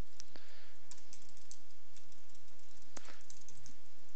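Computer keyboard typing: scattered, irregular keystrokes, with one sharper click about three seconds in, over a steady low hum.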